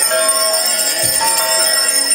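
Small brass altar hand bell, shaken by hand, ringing continuously with a bright, steady jingling.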